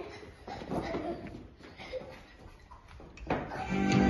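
A quiet pause in a small room, with faint children's voices and movement. A sharp click comes about three seconds in, and music starts just before the end.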